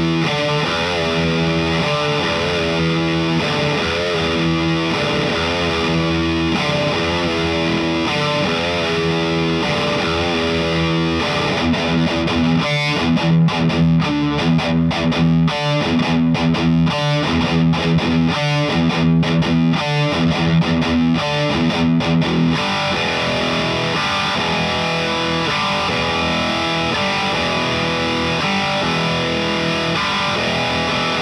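Electric guitar with heavy distortion from a DAE Duality DX overdrive pedal, played as a demo. Ringing chords open and close the passage, with a run of fast, stop-start chugging riffs in the middle.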